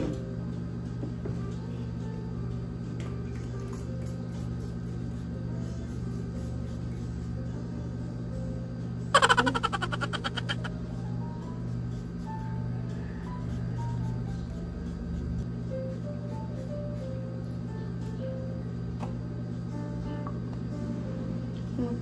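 Steady background music, and about nine seconds in a hair mist spray bottle fired in one burst of rapid ticks that fades out over about a second and a half.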